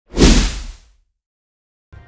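News-intro logo sting: a whoosh sound effect over a deep low boom, swelling in fast and fading out within about a second.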